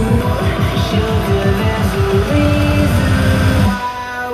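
Music with guitar and fast-pulsing heavy bass played through a JBL Stage 320 party speaker at 70% volume with deep bass boost. Just before the end the bass drops out suddenly and the sound thins as the test hands over to the other speaker.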